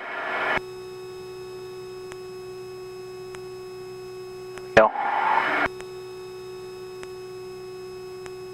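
Steady cockpit hum of a Piper PA46 Mirage in flight: one unchanging pitch with a row of overtones, level throughout. A short hiss opens it, and a single spoken word cuts in about five seconds in.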